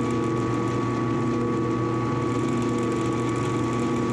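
Drill press motor running at a steady speed, a loud even hum made of several steady tones, as a small bit drills a hole through the plastic fin of a crossbow bolt.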